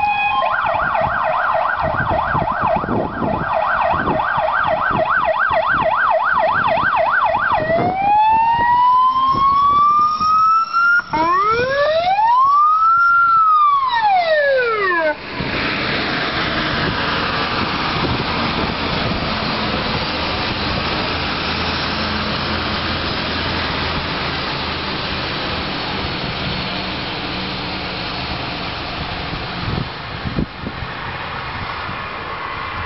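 Fire engine siren on a GBAPr Renault Midlum tender on an emergency run. It starts as a fast warbling yelp of about four sweeps a second, switches to a slow rising wail, then rises and falls once and cuts off about halfway through. After that the truck's diesel engine and road noise go on steadily as it drives past.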